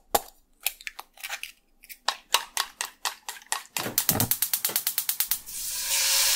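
Edited intro sound effects: sharp, dry clicks, scattered at first, then quickening into a fast run of about eight a second. Near the end a hissing swell rises, leading into music.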